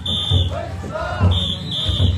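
Shrill whistles blown in short blasts, mostly two at a time, over a steady low thumping beat and the voices of a crowd.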